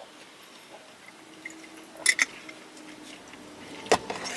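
A person drinking juice from a small plastic cup: quiet liquid and swallowing sounds, with two quick clicks about two seconds in and a sharper click near the end.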